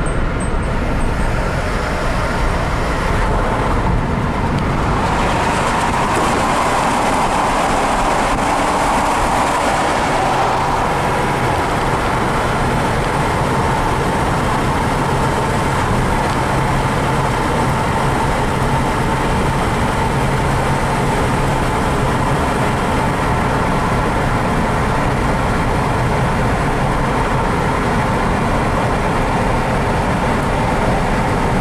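Steady tyre and engine noise of a moving car, heard from inside the cabin. About five seconds in, the road noise takes on a brighter tone, and a steady low hum joins it from about ten seconds in.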